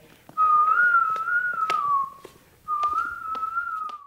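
A person whistling a tune in two short phrases, the first drifting down in pitch at its end, with light footstep clicks beneath it.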